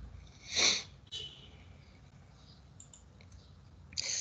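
A person's short, sharp breath close to the microphone about half a second in, followed by a faint click just after a second; otherwise quiet room tone.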